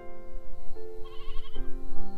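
Background music with held notes. About a second in, a short quavering sheep bleat sounds over it.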